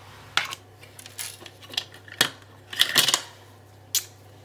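Banknotes and plastic binder sleeves being handled, rustling, with several sharp clicks and taps. The sharpest tap comes near the end, as the challenge card is laid down.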